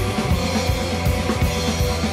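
A modern blues-rock song with a full drum kit, its bass drum and snare hits landing over sustained bass and guitar, in a short instrumental gap between sung lines.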